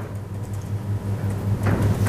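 A steady low hum with a slight pulsing to it; about one and a half seconds in, a faint rustle or muffled sound joins it.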